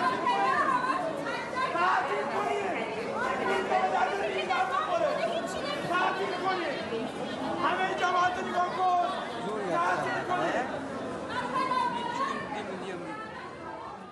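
A crowd of people talking at once: a steady hubbub of many overlapping voices, fading out over the last couple of seconds.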